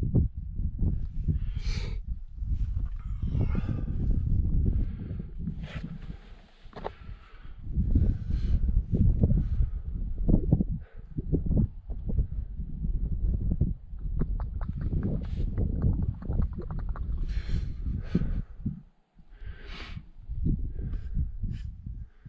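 Wind buffeting a helmet-mounted action camera's microphone in uneven gusts, with a climber's heavy breathing heard as short breaths several times.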